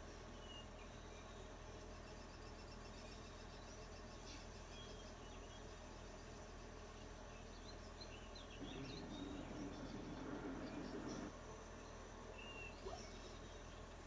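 Jungle ambience from a film soundtrack, heard through the room's speakers: scattered short bird chirps and insect calls over a steady low hum. A louder low noise runs for about three seconds past the middle.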